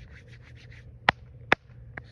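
Hands rubbing liquid chalk into the palms, a quick run of short rubbing strokes, about six or seven a second. Two sharp clicks, louder than the rubbing, come about a second in and half a second later.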